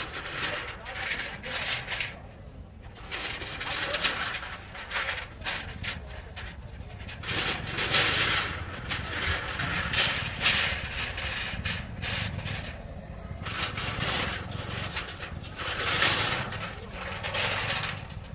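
Scattered small clicks and rustles of hands working thin sensor wires and multimeter test-lead clips, over a low steady background hum.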